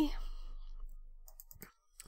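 A few soft, quick clicks from a computer at the desk as it is operated, sparse and irregular in the second half, over a faint low hum.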